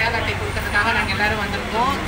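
A woman talking over a steady low rumble of road traffic, with a low engine-like hum coming in partway through.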